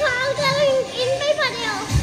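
A young child's high-pitched voice, wavering up and down, over background music.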